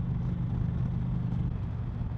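2019 Indian Chieftain Dark Horse's V-twin engine running steadily at highway cruising speed, a constant low drone under a steady hiss of wind and road noise.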